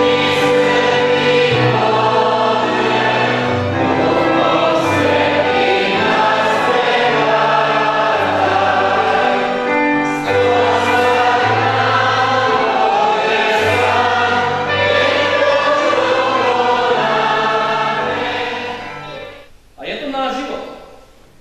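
Church congregation singing a hymn together, many voices over held low notes, fading out near the end.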